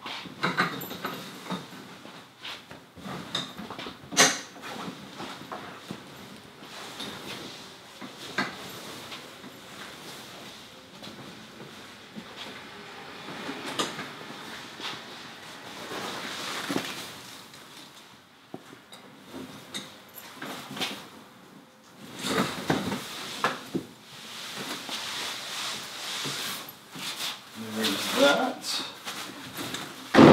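Clam Jason Mitchell flip-over ice shelter being collapsed onto its sled: heavy 900-denier insulated fabric rustling and folding, with frequent sharp clicks and knocks from the frame poles and pins.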